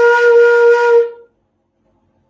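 Bansuri (bamboo transverse flute) sounding one held, breathy note for about a second, then it stops.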